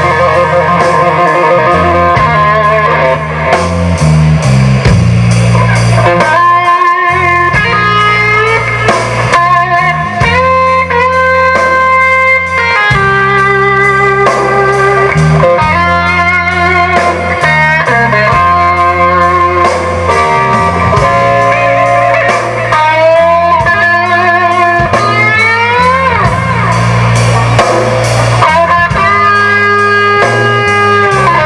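A live blues-rock trio plays an instrumental passage. The electric guitar plays a lead line full of string bends and held notes over electric bass and a drum kit.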